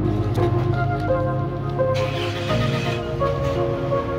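Background music: held melodic notes changing pitch over a steady bass line.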